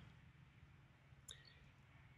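Near silence: faint background hum, with one faint, brief high click or chirp about a second and a quarter in.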